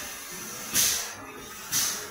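Automatic four-head servo screw capping machine running, with two short hisses of compressed air about a second apart from its pneumatic actuators, over a steady mechanical background noise.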